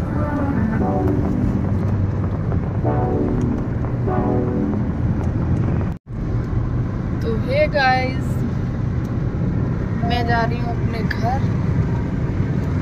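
Steady low rumble of a moving car's road and engine noise heard inside the cabin, with short stretches of a voice over it.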